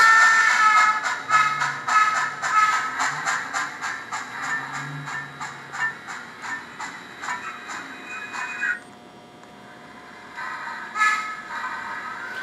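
Sound decoder in an HOn3 model steam locomotive playing rapid, even chuffs, about four to five a second, timed to the wheels by an optical cam. Held high tones sound over the chuffs at the start and again near the end. The sound drops out for a couple of seconds about nine seconds in.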